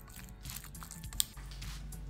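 Soft wet squishing of a spatula stirring yoghurt-coated chicken in a bowl, with one sharp click a little past halfway, under faint background music.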